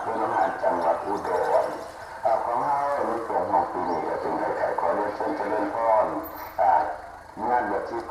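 A voice speaking Thai, talking on almost without a break.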